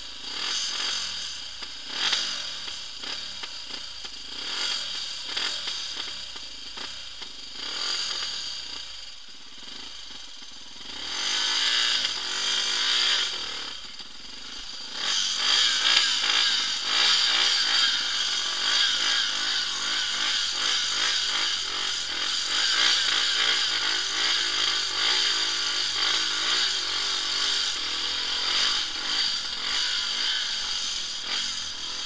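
Off-road motorcycle engine carrying its rider along a rough track: it revs up and eases off several times in the first half, then is held louder and steadier from about halfway through.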